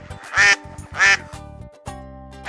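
A duck quacking, about one quack every half second, over light background music that changes to new sustained notes near the end.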